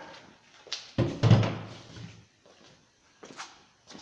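A dull thump as a handheld power tool is put down or picked up on a workbench, with a few light handling clicks near the end.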